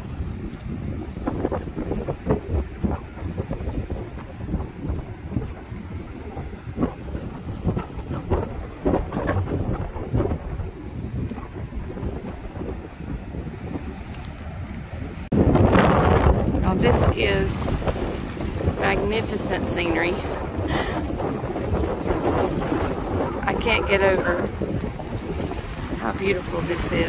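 Strong wind buffeting the microphone on an open seashore, with the sea's surf underneath. The wind gets suddenly louder a little past halfway, and indistinct voices come and go behind it.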